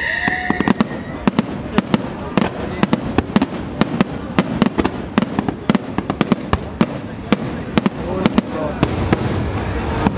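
Aerial firework shells bursting in rapid, irregular succession, several sharp bangs a second, echoing over a steady rumble.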